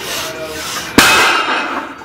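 A trap bar loaded to 610 lb with iron plates is dropped onto the gym floor about a second in: one heavy crash, with the plates clattering and ringing briefly after.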